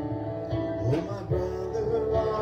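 Live worship music from a church band, an electric keyboard holding sustained chords with a strummed string accompaniment.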